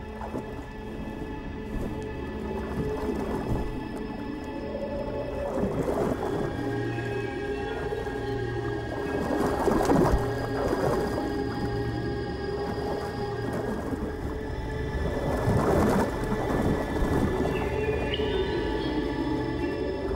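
Background music: sustained held tones with wavering, gliding sounds underneath.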